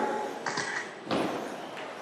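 Electric 2WD stock-class RC buggies with 17.5-turn brushless motors running on an indoor track, a steady hiss of motors and tyres in a large hall. There are short knocks about half a second and a second in, the second followed by a swell that fades as a car passes.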